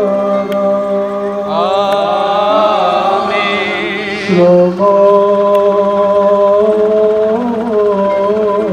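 A priest chanting a liturgical hymn into a microphone, heard through a loudspeaker, in long held notes on a steady pitch. There is a short break about four and a half seconds in before the chant resumes.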